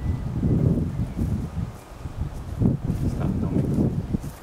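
Wind blowing across the microphone, a low noise that rises and falls in gusts.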